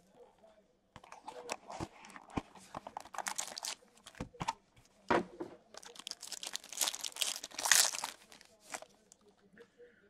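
Clear plastic wrapper crinkling and tearing as a trading-card pack is unwrapped by hand, in irregular crackly bursts that are loudest a little past the middle.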